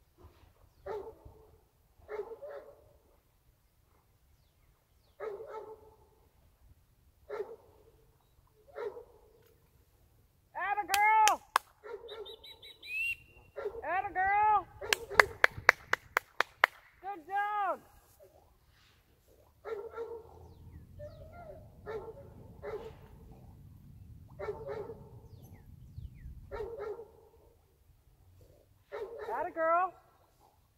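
A dog barking in short, repeated yaps about once a second, broken by several higher yelps that rise and fall in pitch. A quick run of sharp clicks comes about halfway through.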